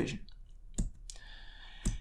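Two sharp computer clicks about a second apart, as the presentation slide is advanced.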